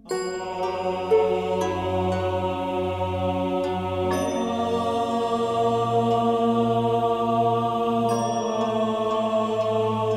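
Gregorian-style chant in low voices comes in suddenly at the start, over a low sustained drone. The voices hold long, slow notes, and a few plucked harp notes sound above them, the loudest about a second in.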